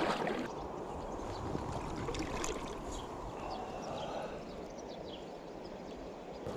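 A person wading through a shallow, stony river: water splashing and gurgling around the legs over the steady rush of the current.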